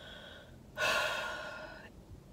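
A woman breathing audibly between sentences: a faint breath, then a louder, longer breath starting just under a second in that fades away.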